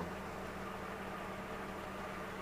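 Holden Commodore engine idling steadily at about 1000 rpm, heard from inside the cabin as an even, low hum.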